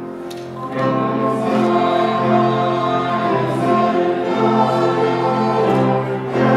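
Congregation singing a hymn with piano, violin and trumpet accompaniment. There is a short lull between sung lines at the start, then the singing and instruments swell back in.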